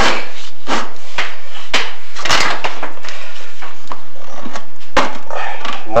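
A chimney inspection camera and its cable scraping and knocking against clay flue tile as it is lowered down the flue: a series of irregular scrapes and knocks.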